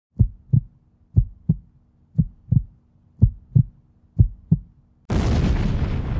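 Heartbeat sound effect: five double thumps, about one a second. About five seconds in, a sudden loud burst of noise cuts in and slowly dies away.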